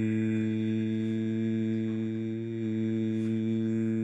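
A person humming one long, steady, low-pitched note.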